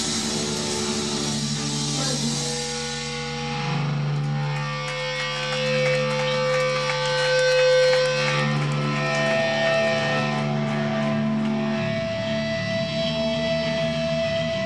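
A live hardcore band's electric guitars played through Marshall amplifiers, holding long ringing notes, a new higher note taking over about two-thirds of the way through, with little drumming.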